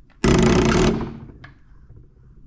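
Diesel injector nozzle on a hand-lever nozzle tester popping open and spraying fuel into a clear container: a single loud burst of hiss and chatter that starts about a quarter second in and lasts under a second. The nozzle opens at around 20 MPa and sprays as it should.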